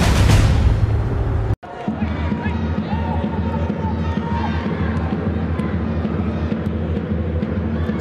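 A loud intro jingle with a swooshing swell, cutting off suddenly about a second and a half in. It is followed by steady football stadium crowd noise from the match broadcast, with a low rhythmic pulsing and faint chanting voices.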